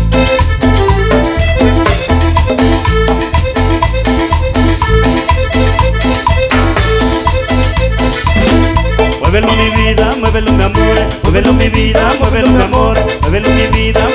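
Live cumbia band playing an instrumental passage with keyboards, electric guitar, bass guitar and drums over a steady dance beat. A melody with sliding notes comes in about nine seconds in.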